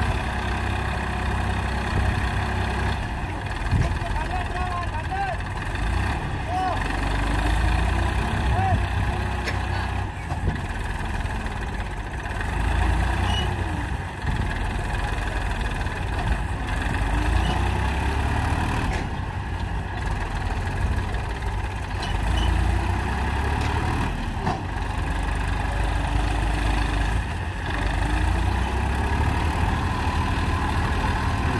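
Massey Ferguson 241 DI tractor's three-cylinder diesel engine running under heavy load, with its revs rising and falling, as the tractor tries to drag a soil-loaded trolley out of soft sand where its rear wheels have dug in.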